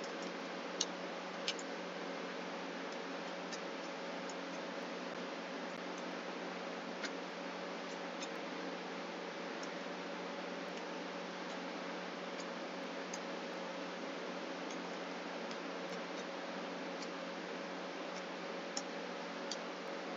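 Computer keyboard keys clicking now and then as code is typed, a few sharper clicks standing out over a steady hiss and low hum.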